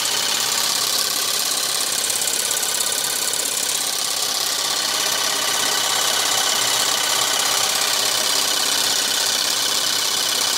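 A 12-volt car air compressor, converted into a vacuum pump, running steadily with a fast, even rhythm as it pulls a vacuum on a plastic bottle.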